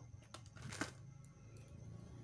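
Faint handling noise from a gel pen and its small cardboard box: a few light clicks and a brief rustle about three-quarters of a second in, over a steady low hum.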